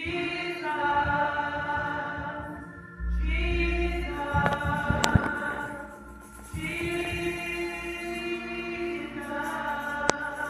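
Church congregation singing gospel praise together in three long, held phrases. A few sharp clicks come in the middle, the loudest about five seconds in.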